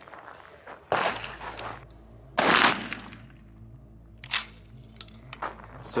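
A single 12-gauge slug fired from a Mossberg 500 pump shotgun, a sharp report with a short echoing tail about two and a half seconds in. A softer thump comes about a second in, and a single sharp click follows later.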